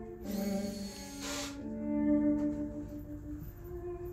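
Slow classical music with held, sustained string tones playing through hi-fi loudspeakers, with a brief hissing wash near the start.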